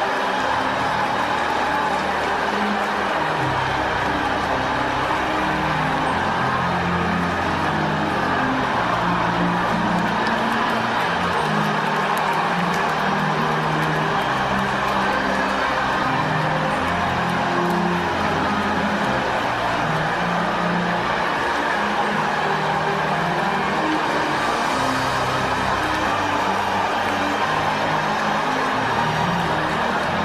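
Church music with low held notes that change every second or so, over the steady wash of a large congregation praying aloud together.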